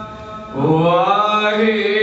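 A man singing Gurbani kirtan. His voice comes in about half a second in, slides up in pitch and settles on a held note, over a steady sustained drone.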